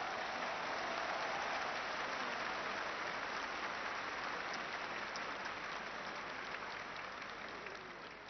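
Audience applauding steadily, fading slowly toward the end.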